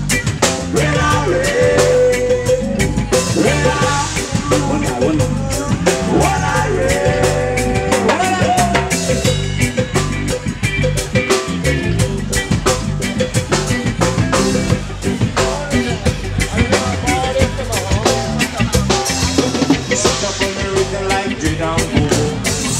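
Reggae band music with a steady drum-kit beat, rimshots on the snare, and instruments playing over it without a break.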